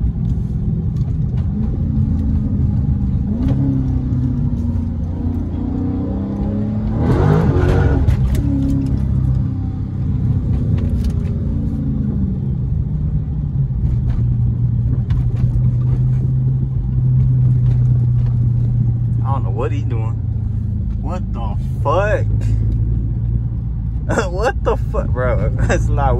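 Dodge SRT 392's 6.4-litre HEMI V8 heard from inside the cabin while cruising. The engine note rises and falls over the first half, with a louder surge about seven seconds in, then holds steady.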